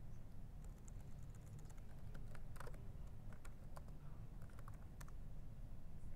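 Typing on a computer keyboard: a run of faint, irregular key clicks that stops about five seconds in, over a steady low hum.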